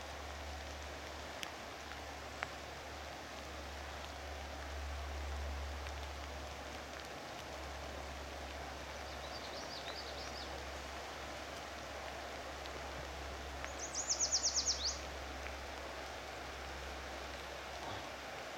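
Steady rushing outdoor noise of the tide washing in over the mud flats, with a low rumble underneath. A few faint high bird chirps come about ten seconds in, and later a songbird gives a quick trill of about ten high notes, the loudest sound, sliding slightly down in pitch at its end.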